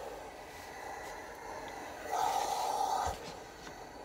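A household iron sliding and rubbing over lining fabric as a seam allowance is pressed open. A louder rushing stretch comes about two seconds in and lasts about a second.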